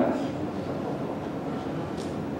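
A pause in speech filled by the steady background noise of a large hall, an even low rumble and hiss with no distinct events.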